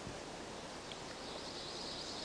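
Quiet outdoor ambience, a faint steady hiss, with a faint high, thin sound coming in about halfway through and holding on.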